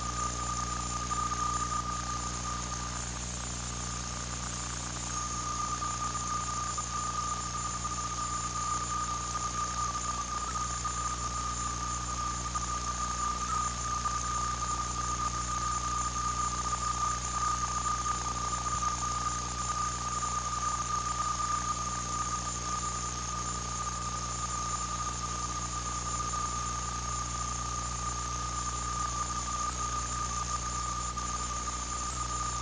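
A steady high-pitched electrical whine with a low hum and hiss underneath, unchanging throughout, with no game or crowd sounds standing out. It is typical of interference on an old videotape recording's audio track.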